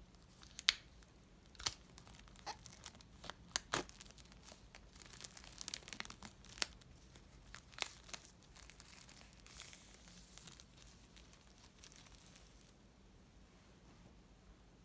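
Clear plastic shrink-wrap being torn and peeled off a cardboard box by hand: irregular sharp crackles and crinkles, thinning out and stopping about ten seconds in.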